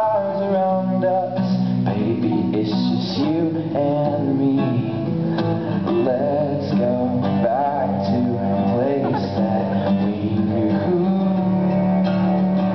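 Live acoustic song: a male voice singing over a strummed acoustic guitar, with a bowed cello holding long low notes underneath.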